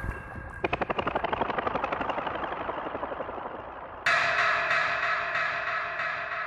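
Psytrance track intro built from electronic effects: a rapid train of sharp clicking pulses starts about half a second in and slowly fades, then a bright sustained synthesizer wash comes in suddenly about four seconds in.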